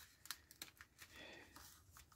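Faint crinkling of a tight clear plastic bag as a paper decal sheet is slid into it, with a few small scattered ticks.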